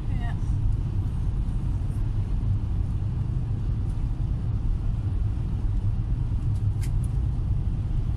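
Steady low rumble of a vehicle driving along a road, engine and tyre noise heard from inside the cabin, with one brief click near the end.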